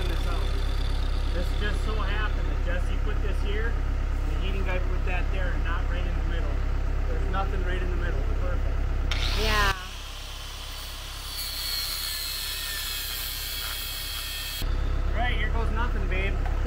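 Heavy equipment engine running steadily with a low drone. About ten seconds in it drops away for about five seconds, leaving a hiss, then comes back.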